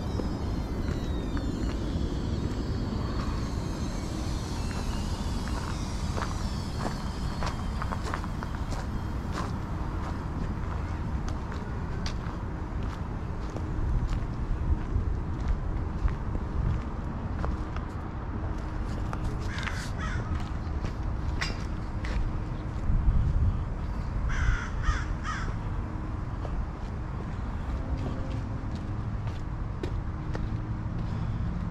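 A crow cawing: a short run of caws about two-thirds of the way in, and another a few seconds later, over a steady low outdoor rumble. Higher chirps come near the start.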